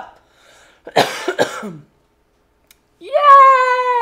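A woman coughs in a short fit about a second in, then lets out one long, drawn-out cheer of "yay!" near the end, its pitch dropping as it trails off.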